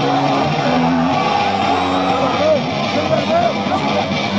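Metal band playing live, heard loud from the crowd: distorted electric guitars holding low notes that shift in steps, with shouted vocals and pitch-bending wails over them.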